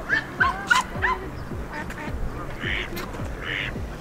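Canada geese honking: a quick run of short honks in the first second or so, then two longer, rougher calls near the end.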